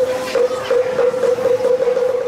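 Bungbang, a Balinese gamelan of bamboo tubes, struck with sticks: a quick, even run of strokes, each ringing on the same pitch, about three a second.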